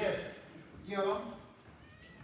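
A man's voice speaking in two short utterances, one at the start and another about a second in.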